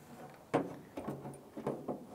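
A new tailgate handle assembly knocking and clicking against the tailgate's inner panel as it is worked into place, a series of short knocks with the loudest about half a second in.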